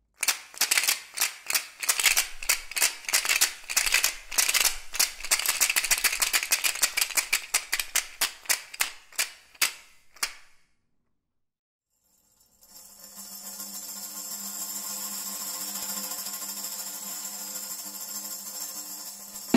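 A pair of Rakatak wasamba rattles, stacks of wooden discs loose on wooden sticks, shaken in a fast rhythm. They give a dense dry clacking for about ten seconds, ending in a few separate clacks. After a short silence a steady sustained musical chord fades in.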